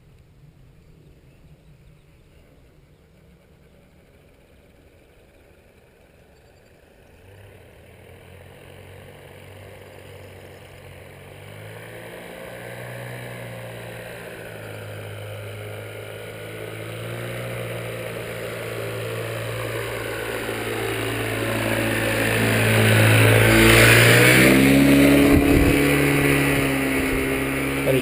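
Paramotor engine and propeller in flight, faint at first and growing steadily louder as it closes in low. It is loudest about 24 seconds in as it passes close, then its pitch drops as it moves on.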